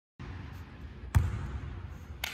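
A basketball bounces once on a hardwood gym floor about a second in, over the steady room noise of a large gym.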